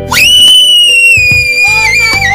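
A young girl's long, very high-pitched shriek of delight, rising sharply at the start and then held, sliding slightly lower, over background music.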